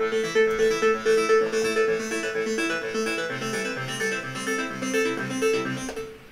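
Many stacked instances of the Serum software synth playing a plucky, keyboard-like note pattern, with distortion in the audio because the 2016 MacBook Pro's CPU is overloaded by 61 tracks. The playback stops at the end.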